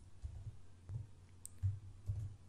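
A few faint, separate computer keyboard keystroke clicks as code is typed, over a low, faint background rumble.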